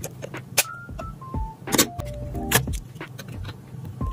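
Sharp plastic clicks and taps from a small plastic floating-frame jewellery box being handled and its hinged lid closed and opened, with three louder clicks: about half a second in, just under two seconds in, and about two and a half seconds in. Light background music with a simple melody plays under them.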